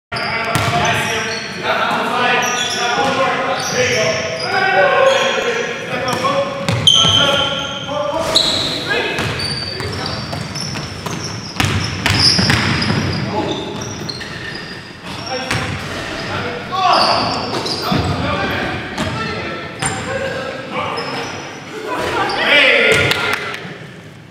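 Basketball dribbling and bouncing on a hardwood gym floor, with players shouting and calling out on court, echoing in a large gym.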